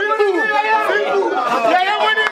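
Several people's voices overlapping in lively group chatter, talking and calling out over one another while they dance and laugh.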